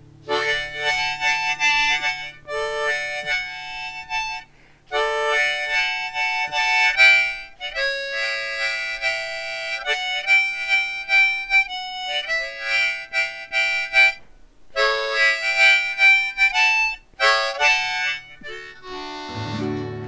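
Harmonica playing a country melody in phrases with short pauses, over a quiet acoustic guitar accompaniment that grows louder near the end.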